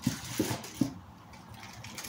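Three soft knocks within the first second as bagged telescope-mount parts are handled and set down, then only faint handling noise.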